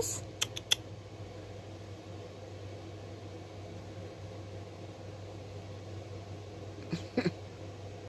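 Quiet room tone with a steady low hum, a few light clicks just under a second in, and one brief vocal sound about seven seconds in.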